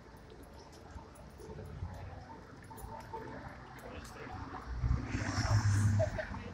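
Quiet street ambience with faint distant voices; near the end a louder low rumble comes in for about a second.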